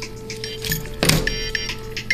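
Background music, with one sharp clatter about a second in as keys and other small belongings are tipped out of a knit hat onto a table.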